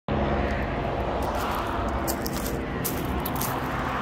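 Steady road-traffic noise, with a vehicle swelling past about a second in.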